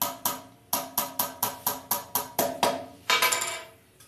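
Small hammer tapping tiny nails into a thin cedar-wood frame: about eleven light, sharp strikes at roughly four a second, then a quick flurry of taps a little after three seconds in.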